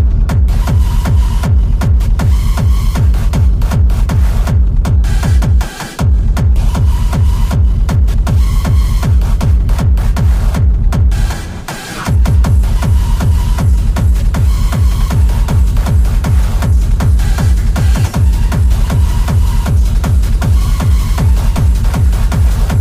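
Hard techno played loud, driven by a fast, heavy, evenly repeating kick drum. The kick drops out briefly twice, about six seconds in and again just before twelve seconds, then comes back.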